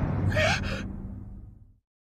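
A young woman's short, sharp gasp about half a second in, made with a hand clamped over her mouth, a startled reaction to being grabbed. Low, dark background music fades out underneath and leaves silence near the end.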